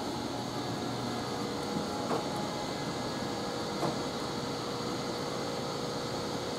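Steady machinery hum with a faint tone in it, broken by two light clicks about two and four seconds in.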